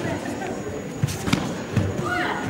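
Bare feet thudding on foam tatami mats as two karate fighters bounce in their stances, with a few short dull thuds in the second half. Background voices from the arena run underneath.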